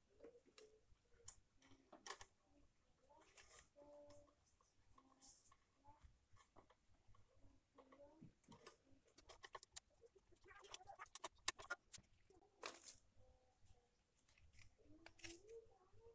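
Faint small clicks and scrapes of a screwdriver and fingers working a wire terminal screw on a plastic clothes-iron housing, with a quick run of clicks about ten to twelve seconds in.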